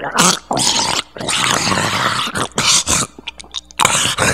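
Monster gurgle sound effect: a throaty, gurgling growl in several bursts, the longest lasting about a second and a half in the middle.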